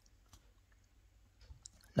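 A few faint, sharp clicks over a low steady room hum, with a man's voice starting right at the end.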